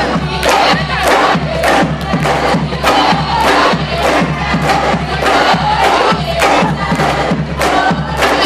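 Drumline of marching snare drums and tenor drums playing a steady, driving beat, with a crowd cheering and shouting over it.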